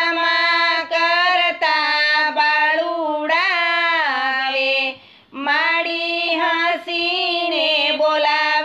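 A high female voice singing a Gujarati garba devotional song in long, bending held notes, with a short break about five seconds in.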